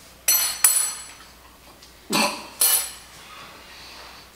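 Metal spoons clinking against dishes: two quick clinks, then another pair about two seconds later, with a short ringing edge.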